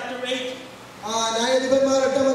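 A man speaking into a microphone, with a short pause a little before the middle.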